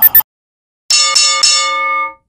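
Intro jingle sound effect: after a brief silence, a bright bell-like chime of a few quick notes about a second in, ringing on and fading out.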